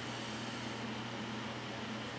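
Steady room tone: a low, even hum with a faint hiss, and nothing else happening.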